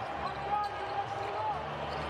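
A basketball being dribbled on a hardwood court, with steady arena background noise.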